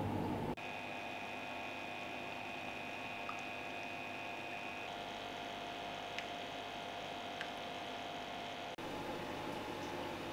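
A faint, steady hum with a couple of held tones, typical of a reef aquarium's pump and equipment running, with a few faint ticks. A louder, noisier low rumble of room noise sits briefly at the start and again near the end.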